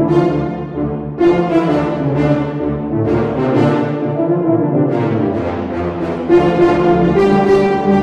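Sampled French horn section with tuba, from Spitfire Audio's Abbey Road ONE Grand Brass library, played from a keyboard in short staccato notes and chords, with several fresh attacks a second. It is played dry with the library reverb off, so only the studio room's own bloom rings after the notes.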